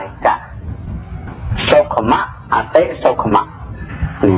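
A monk's voice speaking in Khmer in short, broken phrases with pauses between them, over a steady low hum.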